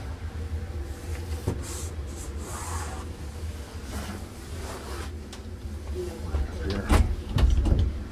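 Clicks and knocks of people moving about inside an RV, over a low rumble of camera handling, with a run of heavier thumps near the end.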